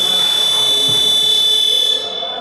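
Basketball scoreboard buzzer sounding one loud, steady, high-pitched tone for about two seconds, then cutting off.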